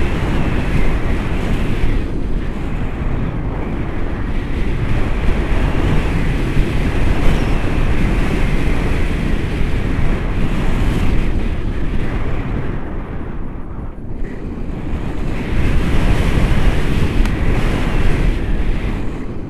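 Wind rushing over a camera microphone during paraglider flight: a loud, gusty buffeting that eases briefly about two-thirds of the way through and then picks up again.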